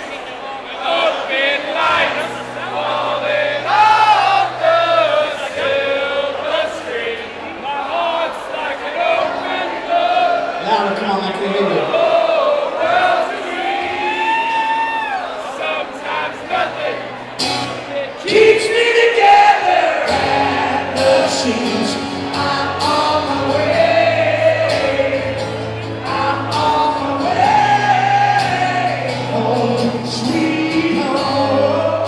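Live acoustic performance: a male singer sings over a strummed steel-string acoustic guitar, with the audience joining in on the vocals. There is a sharp accent about halfway through.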